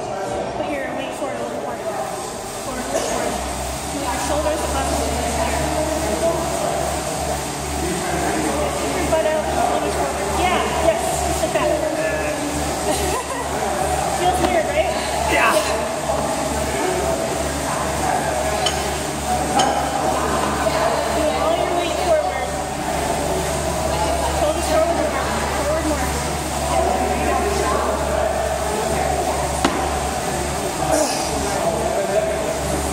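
Gym background of indistinct voices, with a steady low hum that starts a few seconds in. Now and then the plates of a barbell clink as it is lifted in hang power cleans.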